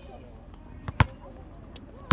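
A basketball bouncing on a hard outdoor court: a single sharp smack about halfway through, with a faint tap just before it.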